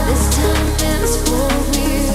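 Progressive house/trance music from a DJ mix: a sustained deep bass line that changes note just after the start, a steady percussion beat, and melodic synth lines over it.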